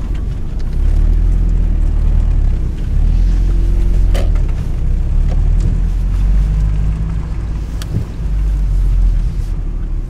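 Low rumble of a car driving slowly, heard from inside the cabin, swelling and easing a few times. There are a couple of short clicks, one about four seconds in and one near eight seconds.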